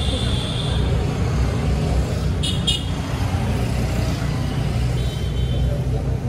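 Roadside traffic noise with a heavy, steady low rumble. A high steady tone fades out within the first second, and two brief high sounds come close together about two and a half seconds in.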